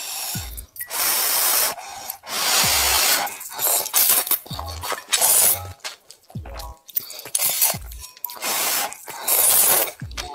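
Glass noodles in spicy broth being slurped from chopsticks, in several long, loud, wet slurps with short pauses between them.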